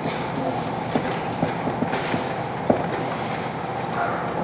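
Dry-erase marker writing on a whiteboard: a few faint taps and short squeaks over a steady room noise.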